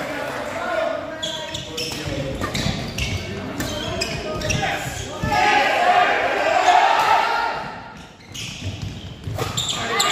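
Badminton rackets striking a shuttlecock in a fast doubles exchange, sharp hits about every half second through the first half, echoing in a large hall. Voices call out loudly about midway through.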